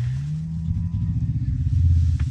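An engine running nearby, its pitch rising about half a second in and then holding steady.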